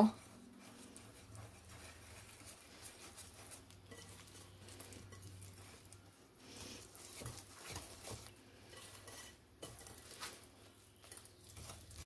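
Wire whisk stirring thick brownie batter in a mixing bowl: faint, irregular scraping and light tapping as the whisk works through the mix and knocks the bowl.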